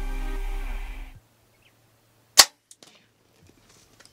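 Hoyt Carbon Defiant compound bow being shot at a steenbok: a single sharp crack about two and a half seconds in, followed by a few faint ticks. Background music fades out in the first second.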